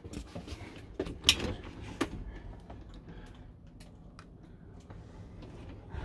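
Door of a Dometic fridge being worked on its hinges and latch: a few sharp clicks about a second and two seconds in, then fainter ticks and knocks, over a low steady hum.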